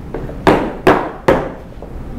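Three sharp knocks in quick succession, evenly spaced less than half a second apart, each dying away quickly.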